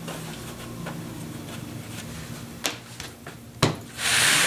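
Two brief taps about a second apart in the second half, from hands handling dough and setting it down at a worktable, over a faint steady low hum.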